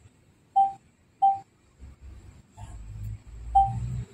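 Three short electronic beeps at one pitch, the last after a longer gap, like a device acknowledging button presses. A low rumble comes in about halfway through.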